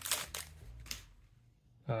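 A glossy hockey-card pack wrapper being torn open and crinkled by hand, a run of short sharp crackles in the first second.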